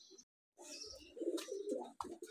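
Domestic pigeons cooing, low and wavering, starting about half a second in, with a single click partway through.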